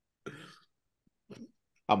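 A person briefly clears their throat after laughing, then a word begins near the end.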